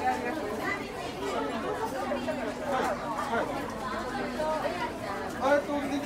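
Indistinct background chatter: several voices talking at once, no words clear.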